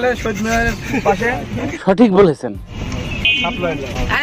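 People talking, with a brief steady high-pitched tone, like a short horn toot, about three seconds in.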